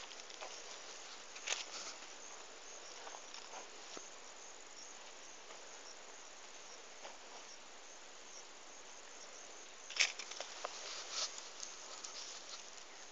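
Faint rustling and crackling of dry cotton plants being brushed through, scattered light clicks over a steady soft hiss, with the sharpest crackle about ten seconds in.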